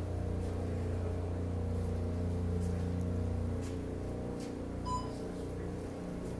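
Steady low machinery hum in a grocery store's back receiving room, with one short electronic beep about five seconds in.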